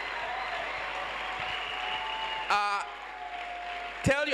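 A congregation applauding, with steady clapping; the clapping eases a little after a short voice cuts in about two and a half seconds in.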